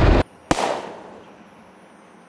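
Cartoon lightning-strike sound effect: a loud rumbling blast that cuts off abruptly a quarter second in, then a single sharp crack about half a second in that fades away.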